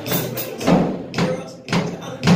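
Acoustic drum kit played in a steady beat of about two strikes a second, drums struck together with cymbals.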